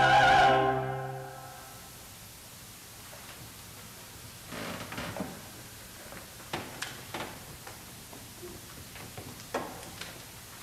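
A choir holds the final chord of an anthem, cuts off about half a second in, and the sound dies away in the sanctuary's reverberation over about a second. After a quiet pause come scattered light knocks and rustles as the singers sit down in the wooden choir stalls.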